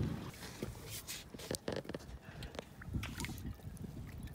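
Faint water lapping and sloshing, with a few light scattered clicks and knocks from handling.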